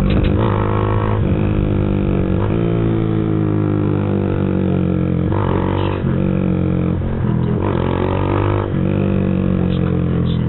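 Z200X motorcycle engine running under way at town speed, a steady drone whose pitch steps up and down a few times with the throttle and sinks slowly in the middle.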